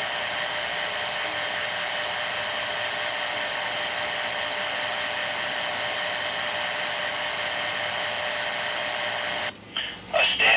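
CB radio static: a steady hiss from the receiver's speaker with a faint steady tone under it, cutting off suddenly near the end.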